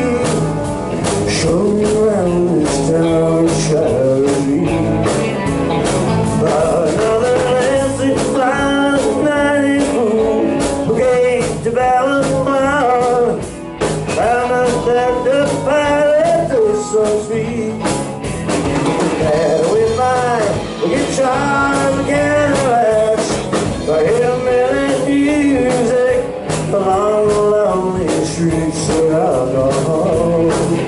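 A live rock band playing at full volume: two electric guitars, an electric bass and a drum kit, with a lead line that wavers and bends in pitch over a steady drum beat.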